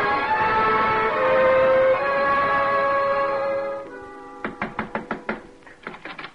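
A music bridge of held chords fades out about four seconds in. It is followed by a quick series of knocks on a door, a radio sound effect that opens the next scene.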